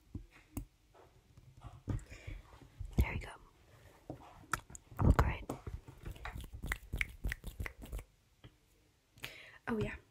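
Close-mic handling sounds: scattered soft clicks, taps and rustles with low thumps, and a heavier bump about five seconds in, as hands work something near the microphone. It falls quiet briefly before a voice starts right at the end.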